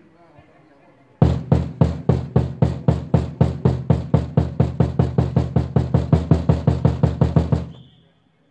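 A drum beaten hard in a fast, even beat, about four hits a second, each hit ringing deep. It starts abruptly a little over a second in and fades out near the end.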